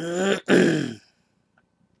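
A man clearing his throat: two short voiced grunts in the first second.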